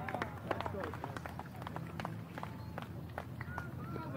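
Outdoor ambience of a sports ground: faint voices with scattered, irregular sharp clicks and knocks over a low steady background rumble.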